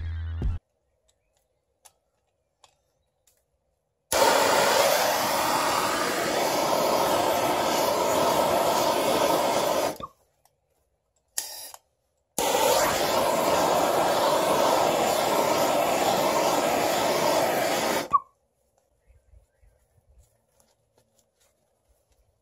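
Handheld propane-butane blowtorch flame burning with a loud, steady hiss for about six seconds, shut off, a brief puff, then burning again for about six more seconds before cutting off.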